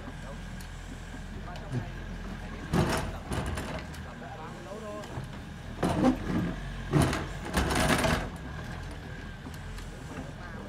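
Doosan mini excavator's diesel engine running steadily while it digs, with several louder knocks and scrapes, the loudest about three seconds in and around seven to eight seconds in.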